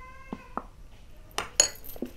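A few light clinks and knocks of a metal spoon against a glass bowl and a metal olive-oil tin being set down on a table, the sharpest about one and a half seconds in. A faint steady tone fades out in the first half-second.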